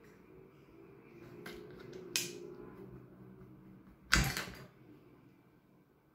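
Hands handling a plastic glue bottle and small tools on a cutting mat: a light rustle, a few small clicks, a sharp click about two seconds in, and a louder sharp knock about four seconds in.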